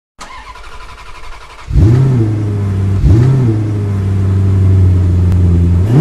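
A car engine, faint at first, comes in loud just under two seconds in with a rev that rises and falls in pitch. It then idles steadily, with another short rev about a second later and one more near the end.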